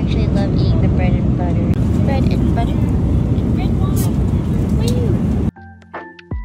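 Loud, steady airliner cabin rumble of engine and airflow noise, heard from inside the passenger cabin, with a woman talking over it; it cuts off suddenly near the end.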